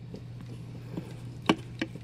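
Two short sharp clicks, about a third of a second apart, from a statue's gauntlet hand being pushed onto its wrist peg, over a low steady hum.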